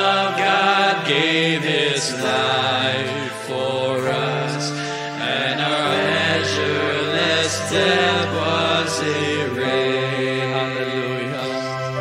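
Live worship band music: two male vocalists singing a slow worship song, the lines "There the Son of God gave His life for us, and our measureless debt was erased", over long held low notes.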